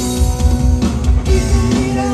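Live rock band playing through a PA: electric guitars holding sustained notes over bass and drums.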